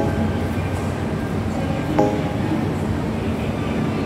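Steady low hum and hiss of a metro train at a station platform.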